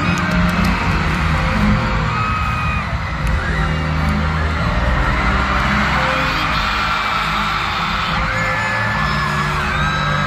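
Live band music played loud in an arena, with a crowd screaming and whooping over it.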